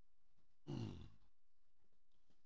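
A man's short closed-mouth "mm" hum, falling in pitch and lasting about half a second, against near-silent room tone.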